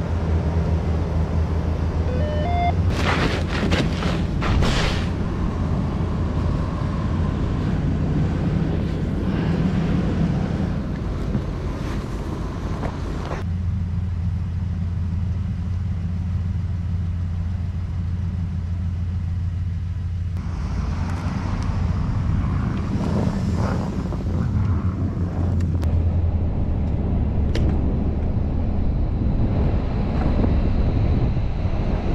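A vehicle engine running steadily with a low drone. A few sharp knocks and clanks come about three to five seconds in.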